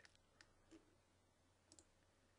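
Near silence with a few faint computer mouse clicks, two of them close together near the end.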